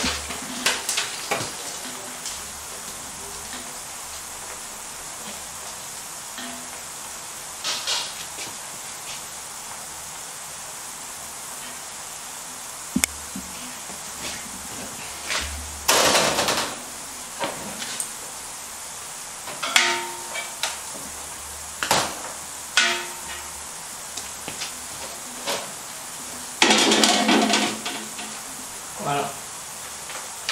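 Sugar-coated almonds scraped out of a copper basin with a wooden spatula and spread on metal sheet trays, in several short scraping bursts, two of them louder and about a second long. A steady low kitchen hum runs underneath.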